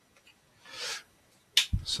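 Two faint clicks, then a man drawing a short breath, then the start of the spoken word "so".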